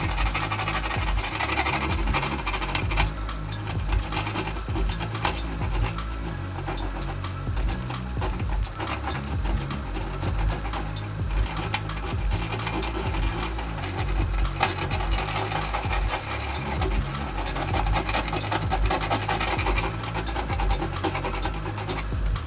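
A small metal screwdriver tip scratching and scraping over a circuit board's solder mask, in short repeated strokes. It is lifting the mask where leaked battery acid has crept beneath it. Electronic background music plays under it.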